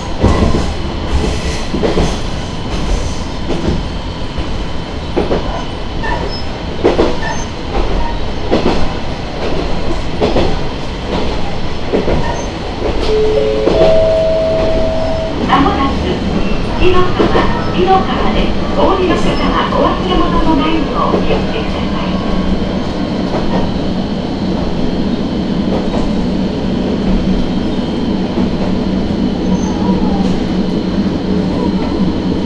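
Diesel railcar running over jointed track, its wheels clicking regularly over the rail joints. About halfway through, a rising three-note chime sounds, then a voice on the train's announcement system. A steady low engine hum carries on as the clicking thins out nearing a station.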